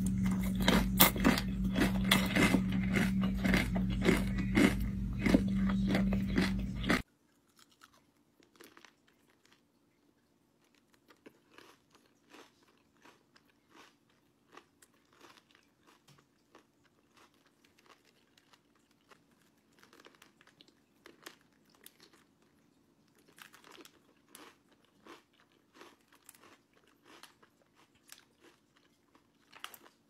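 Crunching bites and chewing into a chamoy-coated pickle. For the first seven seconds the crunching is loud and dense over a steady low hum, then it cuts off suddenly. Faint, scattered crunches and chewing clicks follow for the rest.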